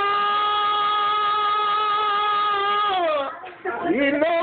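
A man singing, holding one long steady note for about three seconds. The note then falls away, and a rising swoop leads into the next note near the end.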